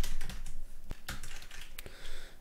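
Typing on a computer keyboard: a quick run of key clicks that thins out to a few separate keystrokes in the second half.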